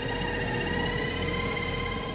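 KitchenAid stand mixer running at speed with its paddle attachment, a steady, even motor whine, creaming butter, sugar and almond paste.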